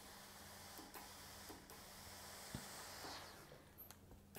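Faint steady hiss of steam from a steam iron pressing a seam open, with a few light ticks. The hiss cuts off near the end.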